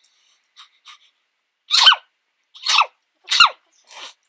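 A woman sneezing three times in a row, each sneeze a loud burst with a falling pitch, less than a second apart, after two faint catches of breath. The sneezes are from hay fever.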